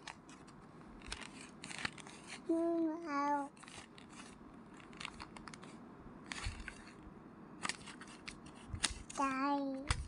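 Stiff paper flash card scraping and rustling against the slot of a toy talking card reader, in many short scratchy strokes and clicks. A toddler makes two short hum-like vocal sounds, about three seconds in and near the end.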